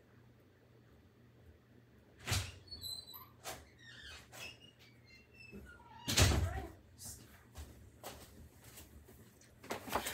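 A door being opened with sharp knocks and short high squeaks, then a heavy thump about six seconds in and a few lighter knocks.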